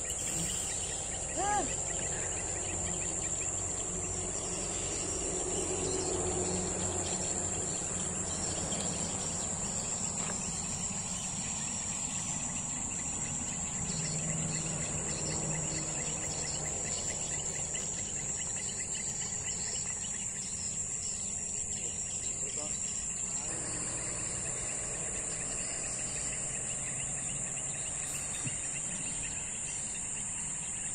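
Steady high-pitched chorus of chirring insects, unbroken throughout, with a short rising squeak about a second and a half in.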